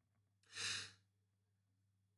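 A man's single short breath, a soft rush of air lasting under half a second, in an otherwise near-silent pause between spoken sentences.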